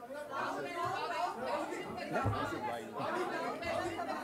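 Several people talking at once away from the microphones, a low chatter of voices in a large room.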